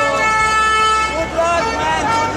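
A horn sounds one steady, held tone for about a second and a half, over the voices of a street crowd.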